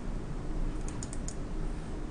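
A few quick computer keyboard clicks about a second in, over a steady low background hum.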